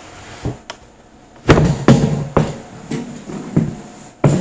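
Equipment chassis being slid out of an ammunition can: a series of knocks and bangs, the loudest about a second and a half in, with scraping between them.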